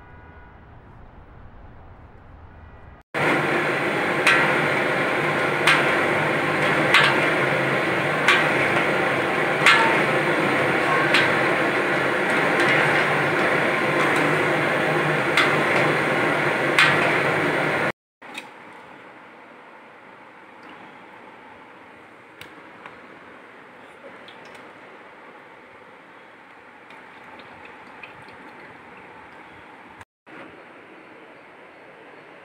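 Chhena balls boiling hard in sugar syrup in a large pan, a loud steady bubbling with a ladle knocking against the pan about once every second and a half. The sound starts abruptly about three seconds in and cuts off about eighteen seconds in. Before and after it there is only quiet room tone with a few light clicks.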